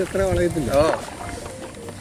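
A voice talks for about the first second, then gives way to a quieter, steady background of a boat moving on water.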